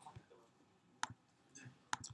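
A handful of faint, isolated clicks from a computer keyboard and mouse being worked, the clearest about a second in and just before the end.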